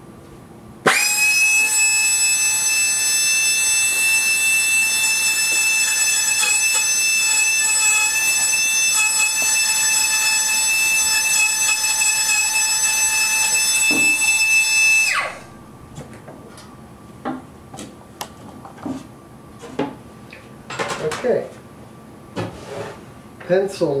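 Small handheld high-speed rotary tool with a tiny router base running with a steady high whine while it trims a wooden guitar back brace to length. It starts abruptly about a second in and runs for about fourteen seconds, then winds down and stops. A few light taps and clicks follow.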